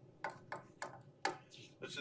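A series of about five short, sharp clicks over a second and a half, then a man's voice begins near the end.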